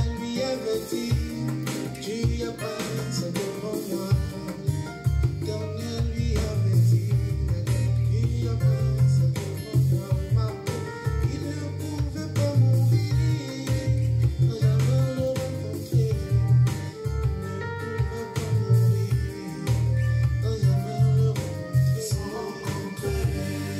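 Playback of a self-produced gospel afrobeat song, a home mix its maker calls not very professional: a steady beat with heavy bass and drum kit, plucked guitar and singing.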